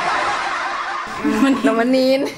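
Laughter: breathy at first, then voiced with a rising and falling pitch for the last part.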